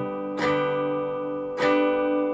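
Semi-hollow electric guitar strumming a G major chord twice, about 1.2 seconds apart, each strum left to ring: one strum per beat at 50 beats per minute.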